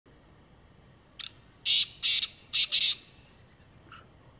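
Black francolin calling: one short lead-in note, then four loud, harsh grating notes in quick succession, the whole call lasting under two seconds.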